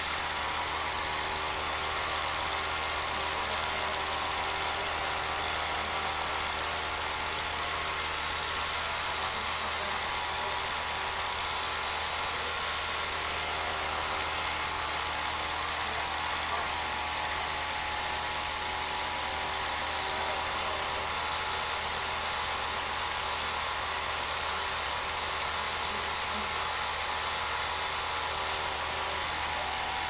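Home-movie film projector running: a steady mechanical clatter over a constant low hum.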